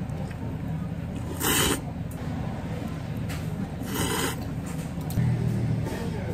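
Someone slurping thick ramen noodles: two short hissing slurps, one about a second and a half in and another around four seconds in, over a steady low hum.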